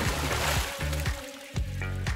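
A whooshing water-splash sound effect that fades within the first second, over a short musical jingle with low sustained bass notes and a steady beat.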